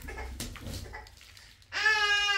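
A baby lets out one loud, drawn-out, high-pitched cry near the end. Before it there is faint rustling and a click as a large floor sheet is lifted and folded back.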